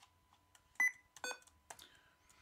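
A short, high electronic computer beep a little under a second in, with a few faint keyboard clicks around it.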